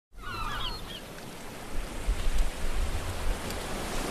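Ocean waves and surf, a steady wash of noise with swelling low surges, with a few short bird cries in the first second.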